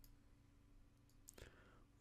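Near silence with a faint steady hum, broken about two-thirds of the way through by a single faint computer mouse click.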